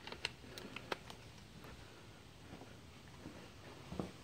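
A few light plastic clicks and taps within the first second or so from a hand handling a DeWalt 20 V power-tool battery pack and its USB adapter, over faint room tone.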